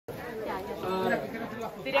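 Speech only: several people chattering, with one voice calling out just before the end.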